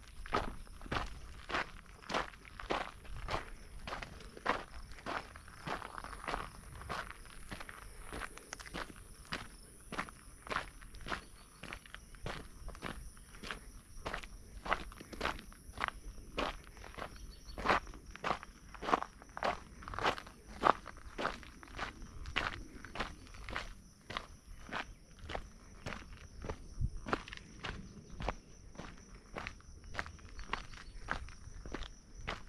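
A hiker's footsteps on a dry dirt trail at a steady walking pace, about two steps a second, each a short crunching scuff.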